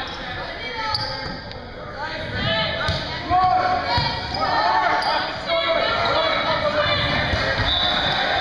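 Volleyball rally on a hardwood gym floor in a large, echoing hall: sneakers squeaking, the ball being struck with a sharp hit about three seconds in, and players calling out.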